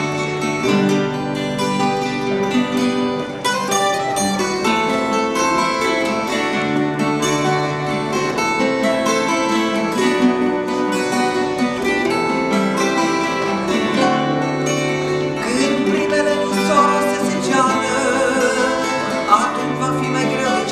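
Two acoustic guitars, one of them a twelve-string, playing an instrumental introduction together in a steady flow of chords.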